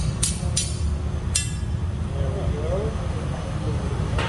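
A few sharp metallic taps in the first second and a half, a steel tool striking a glassblowing rod to knock the glass piece free, over the steady low rumble of a gas-fired glass furnace.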